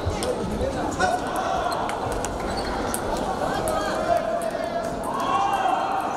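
Table tennis balls clicking off bats and tables in irregular taps, over a background of voices chattering.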